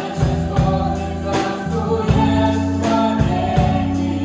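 Live Christian worship band playing: a woman and men singing in harmony over keyboard, electric guitar and a drum kit. The drum kit keeps a steady beat with cymbal hits.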